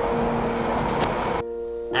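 A train running, a steady rush of noise laid over background music; the train sound cuts off about a second and a half in, leaving the music alone.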